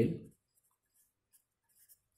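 Marker pen writing on paper: faint, short scratchy strokes as words are written out by hand.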